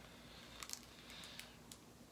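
Faint handling sounds: a few soft clicks and light rustles as fingers work a sandal's strap through its buckle.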